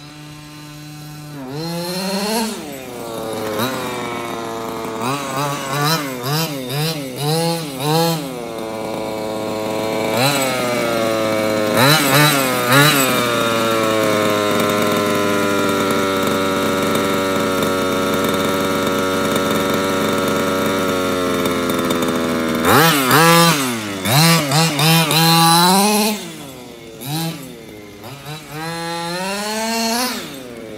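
HPI Baja 5B 1/5-scale RC buggy's stock 23cc two-stroke engine, revving up and dropping back again and again. In the middle it holds a steady high rev for about eight seconds, then drops suddenly and goes back to short bursts of throttle.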